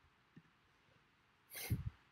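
A single short breathy nasal noise from a person, like a sniff or snort, lasting about half a second near the end.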